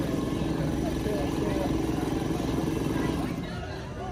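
A steady low mechanical drone with a held hum, which falls away a little after three seconds in, with faint voices in the background.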